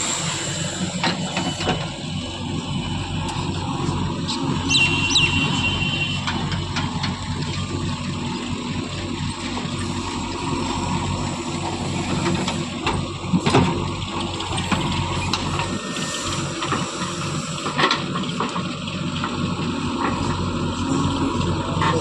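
Diesel engines of a JCB 3DX backhoe loader and a Sonalika DI 745 tractor running steadily while the backhoe digs and dumps soil into the tractor's trolley. A brief high squeal comes about five seconds in, and a few knocks follow, the loudest about 13 and a half seconds in and another near 18 seconds.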